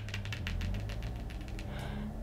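Long acrylic fingernails tapping rapidly on tarot cards, a quick run of light clicks, about ten a second, through the first second or so.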